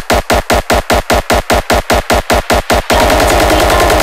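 Hardstyle kick drum in a build-up, hitting steadily about four to five times a second, then about three seconds in speeding up into a rapid roll.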